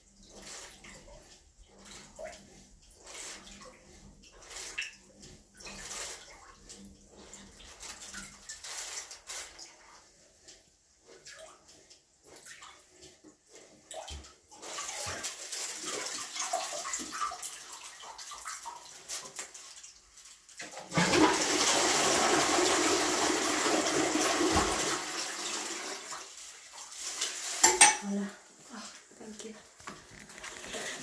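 Blocked toilet being plunged with a plastic bag wrapped over a toilet brush: irregular splashes and sloshes in the bowl. From about halfway water rushes, then a loud flush runs for about five seconds and tails off, the bowl draining now that the blockage has cleared.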